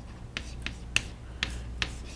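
Chalk striking and writing on a blackboard: about five sharp clicks, spaced irregularly, as symbols are chalked up.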